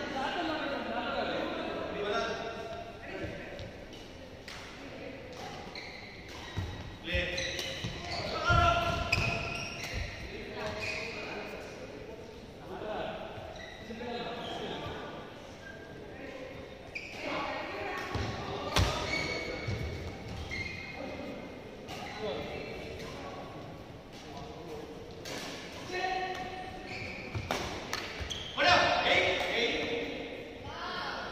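Badminton play in a large indoor hall, echoing: sharp hits and thuds of rackets on the shuttlecock and players' feet on the court, the loudest about a third of the way in, near the middle and near the end. Indistinct voices from around the hall run underneath.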